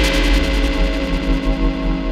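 Live electronic music: sustained synthesizer chords over a deep sub-bass, with a fast ticking echo in the highs that fades away near the end.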